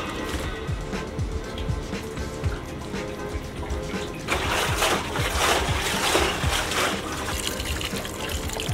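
Distilled water pouring from a plastic jerrycan into the filler hole of an empty Honda CB125 motorcycle fuel tank, starting about four seconds in and lasting about three seconds, over background music with a steady beat.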